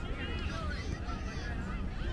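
High-pitched shouts from children's voices on the pitch, two drawn-out calls in the first second and a half, over a low rumble of wind on the microphone.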